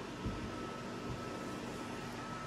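Steady room tone in a small room: a low, even hiss with a faint thin whine, with one soft bump shortly after the start.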